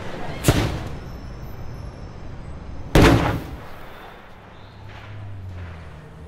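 Two loud blast-like bangs about two and a half seconds apart, the second one louder and deeper, each with a short ringing tail.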